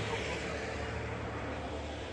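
A car driving slowly past close by, its engine giving a steady low hum.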